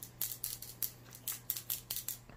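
A run of short, irregular clicks and rustles, about eight in two seconds, from a fishing rod and camera being handled, over a steady low hum.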